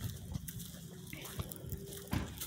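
Footsteps on wood-chip mulch and dry leaves: faint, scattered crunches and clicks.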